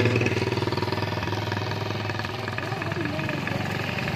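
A small motorcycle engine running close by with a fast, even pulsing note that slowly fades, over the hiss of steady rain on a wet road.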